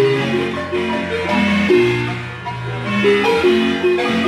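Guatemalan marimba playing a piece: a melody of held notes and chords in the middle keys over a steady bass line.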